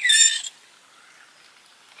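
A spoon scraping the inside of a camping mug, one short high-pitched scrape lasting about half a second.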